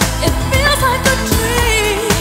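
A 1990s pop song playing: a singer's voice over a steady drum beat and bass.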